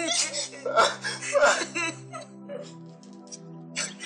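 A man and a woman crying and groaning in distress, in short wavering sobs that are loudest in the first couple of seconds, over background music with long held notes.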